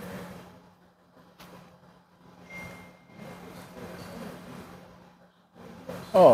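A cigar being puffed: soft, irregular draws and exhales of smoke over a steady low room hum.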